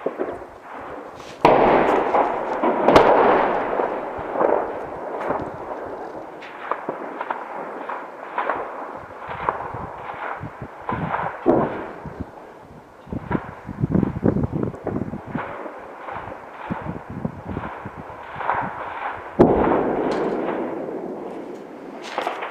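Gunfire and heavier blasts in urban combat: a running crackle of shots, with several loud blasts that echo and die away slowly, one about a second and a half in, another soon after, and one near the end.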